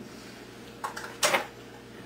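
Kitchenware being handled over quiet room tone: a brief scrape a little under a second in, then a short, louder knock or clink.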